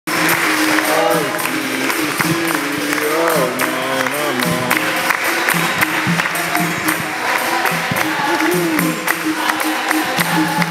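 Capoeira roda music: voices singing over a steady beat of pandeiro jingles and hand clapping, with the low two-note twang of a berimbau underneath.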